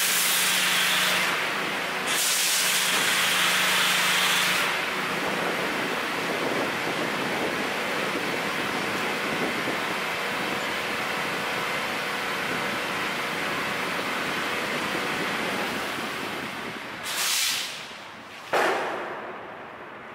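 Pressure-washer foam cannon spraying snow foam in two bursts over the first few seconds, followed by a steady hiss. Near the end there is a short burst, then a sudden loud hit that fades away.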